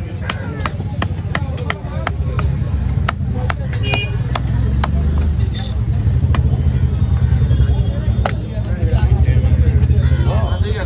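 Knife chopping on a wooden log chopping block as fish is cut: sharp knocks about two to three a second through the first half, fewer later. Under them runs a loud, steady low rumble that grows stronger in the second half, with voices in the background.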